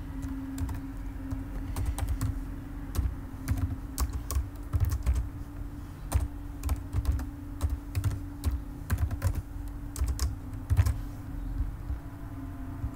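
Typing on a computer keyboard: a run of irregular key clicks as a line of code is entered, with short pauses between bursts.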